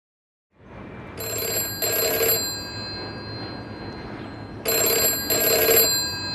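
Telephone ringing with the British double ring: two pairs of rings, the first pair starting about a second in and the second near the end.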